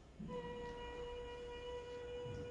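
A sustained vowel 'eee' sung at one high, steady pitch from the projected laryngoscopy video as the vocal folds close to vibrate, heard faintly through the room's speakers; it starts about a quarter second in and holds.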